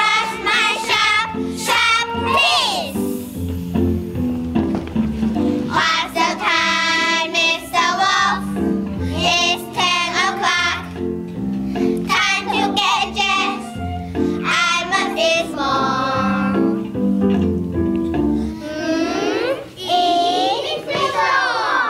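A group of young children singing together over recorded musical accompaniment, the song coming in phrases with short stretches of accompaniment between them.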